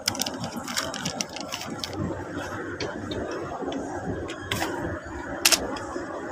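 Thin plastic wrapper of a face-mask packet crinkling and crackling as it is torn open and handled, in a run of irregular small crackles. Two loud sharp clicks come near the end.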